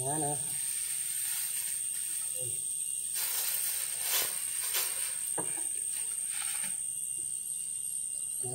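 Dry leaf thatch rustling in several bursts, the longest a little over a second, as a thatch panel is handled and fitted onto bamboo rafters, over a steady thin high-pitched whine.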